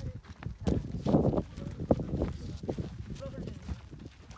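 Camels walking on a dry, stony track, their footfalls coming as irregular thuds, with people's voices over them.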